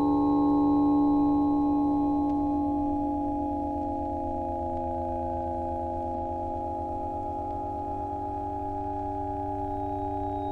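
Electronic music: a cluster of steady sine-like tones held together over a low pulsing hum, with a couple of the tones gliding slowly downward about three to four seconds in.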